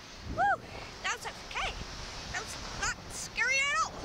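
A girl's short, high-pitched cries and yelps while riding a slingshot thrill ride, a string of brief rising-and-falling calls with a longer, wavering one near the end, over a steady rush of noise.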